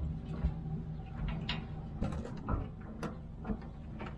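Steel safety chains of a gooseneck flatbed trailer clinking and rattling as they are handled and hooked to the truck bed: a string of separate clinks over a steady low hum.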